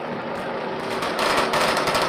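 Rapid small-arms gunfire from a military training exercise, a dense crackle of quick shots that grows louder about a second in.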